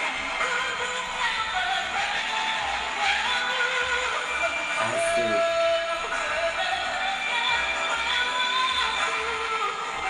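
A woman singing a slow pop ballad live over a backing track, with long held notes, one held for about a second and a half around the middle.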